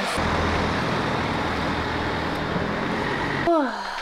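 Steady road-vehicle noise, a continuous rumble with no distinct events, that cuts off about three and a half seconds in.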